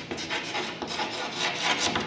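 Chalk writing on a blackboard: a quick run of short, scratchy strokes as a word is written out.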